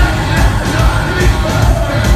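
Heavy rock band playing live at full volume, a pounding drum beat and guitars under sung vocals, heard from the audience in a concert hall.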